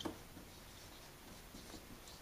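A marker writing on a whiteboard: faint, quick scratching strokes, with a small tap as the tip meets the board at the start.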